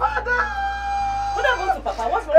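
Women wailing in grief: long, high held cries, with several voices overlapping near the end.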